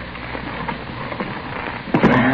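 Steady crackling hiss of an old radio-drama recording, with faint scattered ticks.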